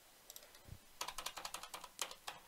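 Typing on a computer keyboard: a few faint key taps, then a quick run of keystrokes about a second in.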